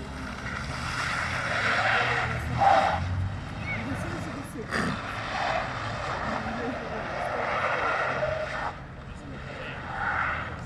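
Mercedes W203 C-Class estate's 2.2 CDI four-cylinder diesel driven sideways while drifting: engine revving with tyres skidding on asphalt, in several surges that die away near the end.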